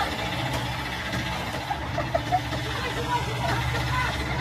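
Mini excavator's engine running steadily after the machine has tipped onto its side, with brief shouts from people.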